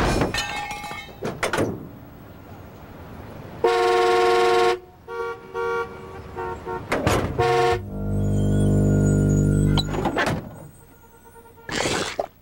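Cartoon sound effects of a taxi cab's car horn: a loud honk lasting about a second, a few seconds in, followed by several short toots. A lower steady drone follows for about two seconds, with knocks at the start and near the end.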